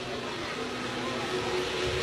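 Steady background hiss with a faint low hum, the noise floor of a microphone recording in a pause between spoken lines.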